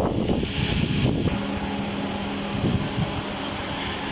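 Wind buffeting a body-worn camera's microphone while the wearer walks. A steady mechanical hum from the idling police SUV comes in about a second and a half in as it draws near.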